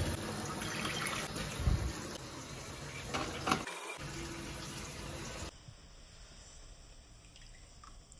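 Kitchen tap running a steady stream of water into a stainless steel sink. The rush of water stops a little past halfway, and the sound drops away.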